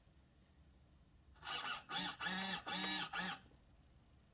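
A quick run of about five steady electronic beeps, starting about a second and a half in: the start-up tones of the boat's 65 A speed controller, sounded through its DPower AL3548-4 brushless motor.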